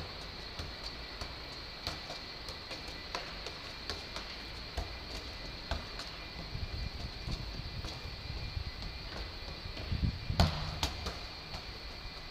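Football being juggled with the feet on a concrete floor: a run of light taps, a few every second, with a heavier thud about ten seconds in, over a steady high-pitched hum.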